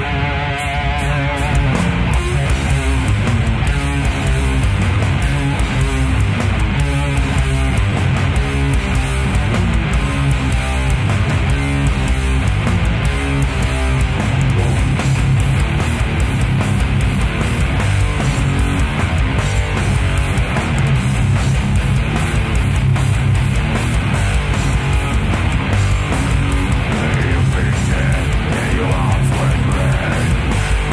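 Live death metal band playing: heavily distorted electric guitar, bass guitar and fast drums with dense cymbal and drum hits. It opens on a wavering held guitar note, and the full band comes in about a second in.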